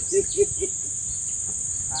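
Steady high-pitched buzzing drone of insects, with four short low notes in quick succession in the first second.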